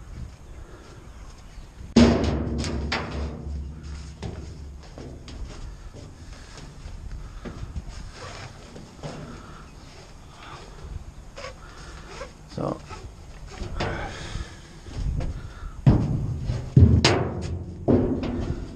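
A sudden hollow thud about two seconds in that rings briefly, from something striking the steel hook-truck bin. It is followed by scattered knocks, clinks and rustles of ratchet-strap webbing and hardware being handled against the skid steer and the bin, with louder knocks near the end.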